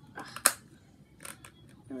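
Snug plastic phone case being pressed onto a phone: a few clicks and handling rustles, with one sharp snap about half a second in.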